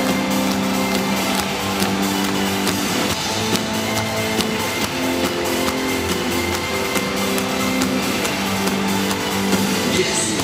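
Live pop-rock band playing an instrumental passage: electric guitar and drum kit under held chords that change every second or two, loud through an arena sound system.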